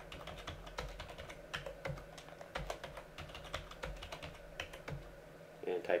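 Computer keyboard typing: a run of irregular keystroke clicks as a password is entered and retyped at a terminal prompt.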